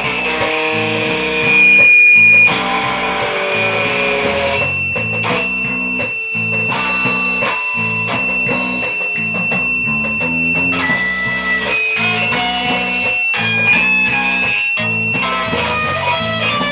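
Live band playing: electric guitar notes over a repeating bass line and drums. A loud high guitar note rings out briefly about two seconds in.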